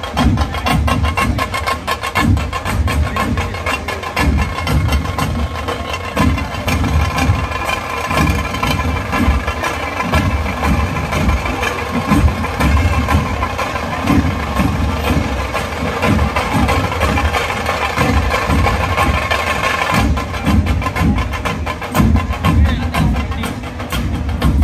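A large ensemble of folk drums playing a loud, driving rhythm. A sustained melody line runs above the drumming from about a third of the way in and drops out about four seconds before the end.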